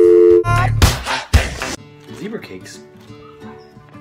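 A telephone dial tone, two steady tones sounding together, cuts off about half a second in. It is followed by two loud, harsh noisy bursts within the next second or so, then quieter mixed background sound.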